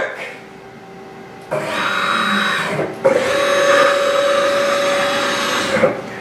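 Taig CNC lathe's closed-loop servo motors driving the ball screws in a rapid traverse of about 150 inches a minute: a steady mechanical whine that starts about a second and a half in, breaks briefly near three seconds, then holds one even tone until just before the end.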